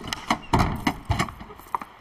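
Heavy footsteps of a large animated dragon: two deep thuds about half a second and a second in, among lighter knocks.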